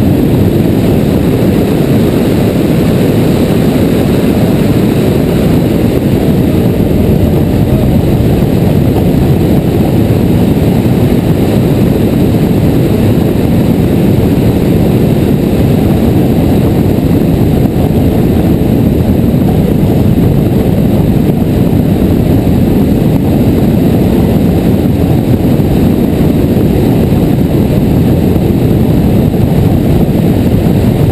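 Steady, loud rush of wind buffeting an onboard camera's microphone, mixed with the running noise of a high-speed roller coaster train as it races along the track.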